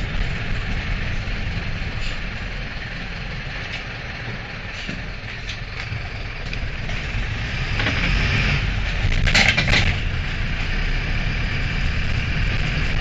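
Mercedes-Benz LO-914 bus's OM904 four-cylinder turbodiesel running under way, heard from inside the passenger cabin as a steady low rumble, with no cooling-fan howl. It grows louder after about seven seconds, with two sharp bursts of noise about eight and nine and a half seconds in.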